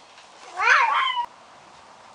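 A single short animal call, rising then falling in pitch, about half a second in and lasting under a second.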